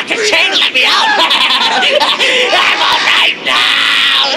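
Shrill screaming and cackling laughter from several overlapping voices, loud and continuous with no clear words.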